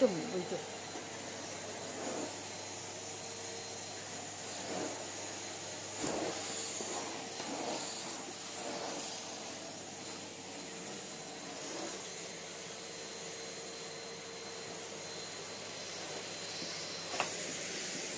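Numatic Henry vacuum cleaner running steadily: an even rush of air with a steady hum and a faint high whine, as its floor tool is pushed over carpet.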